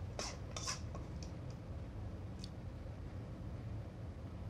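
Faint scrapes and clinks of a utensil in a stainless steel mixing bowl, a few short ones in the first second and one or two later, over a low steady hum.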